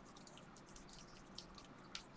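Faint, light clicks and rustles of a stack of sleeved trading cards being flipped through by hand, as short scattered ticks.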